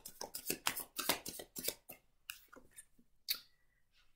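A deck of tarot cards being shuffled overhand by hand: a quick run of light clicks and slaps as packets of cards drop from one hand into the other for about two seconds, then only a few scattered taps.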